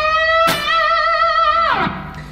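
Fender Stratocaster electric guitar playing a full-tone bend at the 15th fret of the B string. The note is picked again about half a second in and held with wide vibrato, then the bend drops back down and fades near the end.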